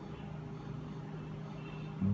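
Quiet pause between dictated words: only a faint, steady low background hum.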